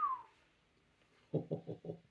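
A man's short chuckle of a few quick pulses about a second and a half in, following a brief whistled note that falls in pitch and fades right at the start.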